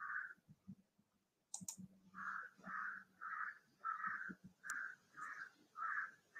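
Faint, evenly repeated calls, about two a second, from an animal in the background. They start about two seconds in, and a few soft clicks fall among them.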